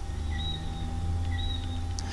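Steady low background hum with a faint steady tone, and a short faint high chirp repeating about once a second.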